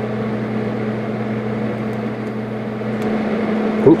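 Lincoln TIG 200 welder running during TIG welding: a steady electrical hum with the welder's cooling fan. About three seconds in, one of the humming tones drops out as the arc starts drifting.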